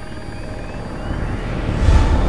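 A low, steady rumble that swells louder and ends in a deep hit with a whoosh, typical of a horror-trailer sound effect.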